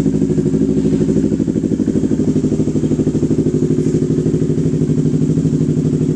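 Yamaha R3's parallel-twin engine idling steadily through a replica Yoshimura Alpha slip-on exhaust, heard from about 10 meters in front, with an even, low pulsing beat. It is not very loud.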